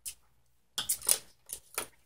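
Face-painting brushes and paint containers being handled and set down on a tabletop: a click at the start, a short cluster of light clinks and rattles about a second in, then two more small clicks.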